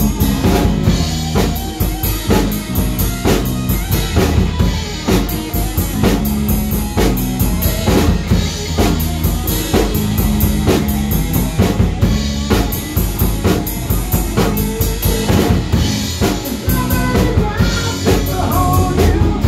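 A rock band playing live at a rehearsal: a drum kit keeping a steady beat under an electric guitar in an instrumental passage.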